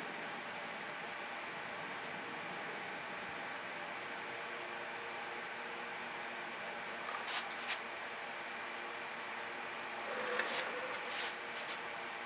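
Steady background hum with a faint even hiss, broken by a few light clicks about seven seconds in and brief handling noise a little after ten seconds in.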